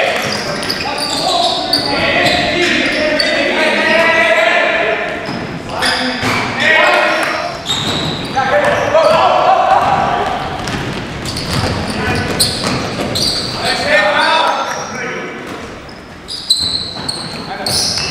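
Men talking close by in a large, echoing gym, over a basketball being dribbled and bounced on the hardwood court during a game.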